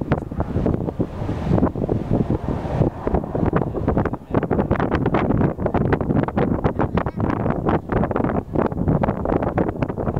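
Wind buffeting the microphone, loud and gusty, in rapid irregular bursts.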